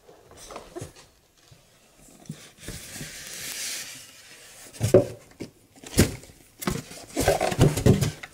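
Cardboard box flaps and polystyrene foam packing being handled: a soft rustling and scraping, then a few sharp knocks about five and six seconds in and a quick run of knocks and scrapes near the end as the foam-packed unit is lifted out.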